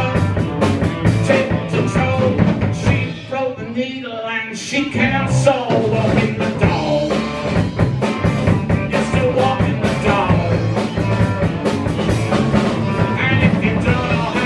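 Live band playing through a PA in a function room: drum kit, bass, electric guitar and a singer. About three seconds in, the drums and bass drop out for a short break, and the full band comes back in around two seconds later.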